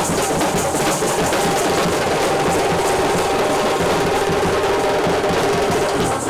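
Indian wedding brass band (band baaja) playing: fast, dense drumming under long held horn notes.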